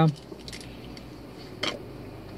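Steady road and engine noise inside a moving car's cabin, with one short sharp sound about one and a half seconds in.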